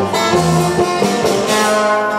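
Live norteño band music in an instrumental passage without vocals, with guitar playing over the band.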